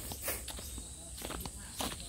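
Soft, irregular rustles and clicks, like steps or handling in vegetation, over a steady high-pitched insect chirring.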